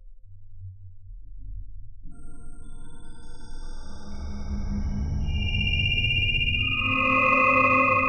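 Sonified Juno spacecraft data: a low rumble under many steady electronic tones at different pitches that come in one after another from about two seconds in, growing louder, with a rush of hiss near the end.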